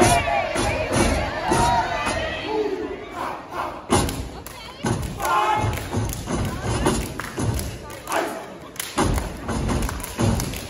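Step team stomping on a stage in sharp, unison strokes, with shouted calls from the performers and crowd noise.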